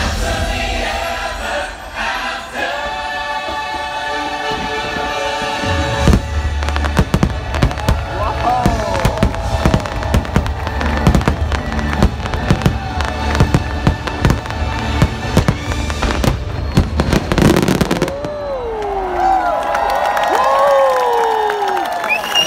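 Orchestral show music with a choir, then from about six seconds in a rapid, dense barrage of firework bangs over the music, the show's finale. Crowd voices and cheering rise near the end.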